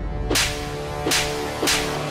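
Three whip-like whoosh sound effects about half a second apart over a held musical chord: the dramatic stinger of a Hindi TV serial, laid over a raised hand about to slap.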